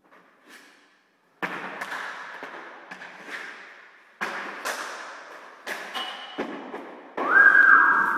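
Hockey stick striking a puck and the puck knocking against the rink, a series of about five sharp knocks with an echoing tail, the first about a second and a half in. Near the end a loud, high held tone starts and steps down in pitch.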